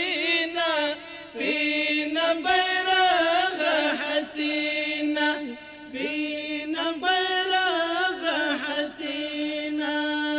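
A small group of men chanting a Pashto tarana into microphones with no instruments, in long, held, wavering sung notes.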